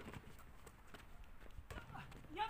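A basketball bounces once sharply on a hard court at the start, followed by faint scattered taps and scuffs of sneakers as the players move.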